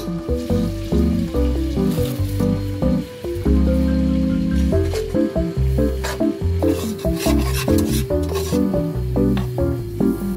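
Lo-fi background music with a bass line and chords. Under it, faint stirring and sizzling of flour being worked into hot fat in a metal pot.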